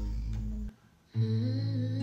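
Background music: a sustained low bass under a hummed vocal melody. It drops out briefly a little under a second in, then comes back in.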